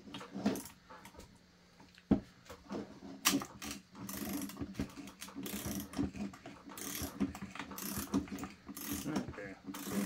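Ratchet wrench clicking through repeated back-and-forth strokes as a fastener on a chainsaw's crankcase is turned, with a sharper knock about two seconds in and steadier clicking through the second half.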